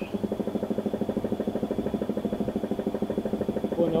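Air compressor starting up suddenly and running with a steady, rapid, even pulsing and a thin high whine over it.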